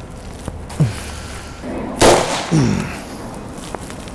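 A single rifle shot about two seconds in, fired with a potato jammed on the muzzle as a makeshift suppressor. The potato barely muffles the report, which a sound meter puts at about 78 dB.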